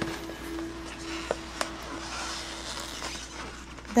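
Soft background music holding one steady note that fades out about two-thirds of the way through. Under it there are a couple of faint clicks and a light crinkle of stiff glossy paper being handled.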